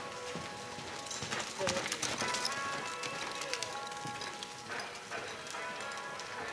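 A horse's hooves striking the dirt at a lope, with a run of sharper clicks between about one and three seconds in, over background music.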